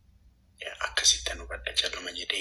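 A person speaking in a breathy, hissy voice, starting about half a second in.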